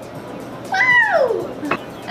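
A young woman's high-pitched, meow-like vocal exclamation, about a second long, that jumps up and then slides steeply down in pitch, followed by a short click.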